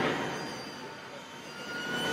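Sound effect in the track's beat break: a hissing noise wash left after a bang fades away, with faint high steady tones in it, then swells up again near the end.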